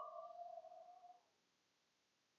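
The tail of a man's voiced sigh, fading out about a second in, then near silence with faint room tone.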